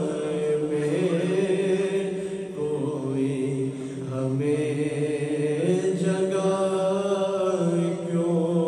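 Naat sung unaccompanied by a male reciter, holding long, drawn-out notes that glide from one pitch to the next.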